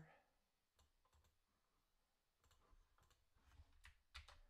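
Near silence with a few faint clicks at a computer, scattered at first and coming more often in the last second and a half.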